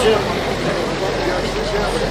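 Crowd of men talking over one another in a steady babble of overlapping voices, with a low steady rumble underneath.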